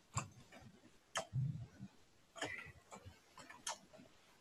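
Faint, irregular clicks of a computer mouse and keyboard, about eight in all, with a low soft thump about a second and a half in.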